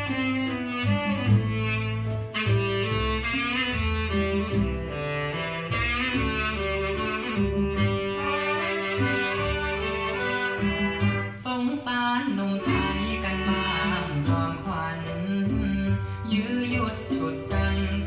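Recorded music playing through loudspeakers from a Marantz Model 4270 receiver, with a moving bass line under sustained melodic notes at a steady level.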